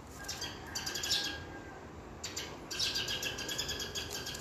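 Birds chirping in two quick, high-pitched runs of rapid repeated notes: one in the first second or so, the other from a little past two seconds in.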